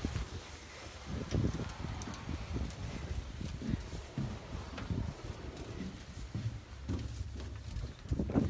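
Footsteps walking down a marina gangway and along a floating pontoon, a steady train of low thumps about two a second.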